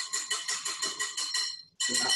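A wire balloon whisk beaten fast around a glass mixing bowl, about eight strokes a second, the wires ringing against the glass as cream cheese is beaten into double cream. The whisking stops abruptly near the end.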